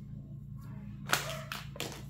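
Trading cards and packs being handled by hand: a sharp slap-like hit a little past halfway, then a few short rustles.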